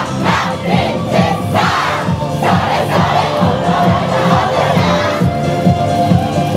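A troupe of yosakoi dancers shouting together several times through the first half, over loud recorded dance music with a steady beat.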